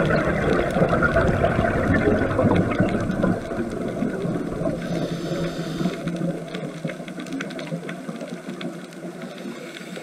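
Underwater bubbling and crackling from a scuba diver's exhaled breath, loudest for the first few seconds and easing off after.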